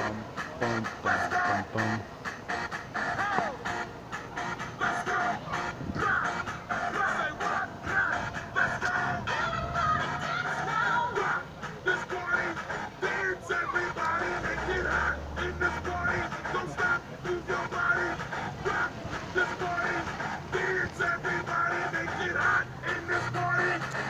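Music with a steady beat and a bass line, played for dancing.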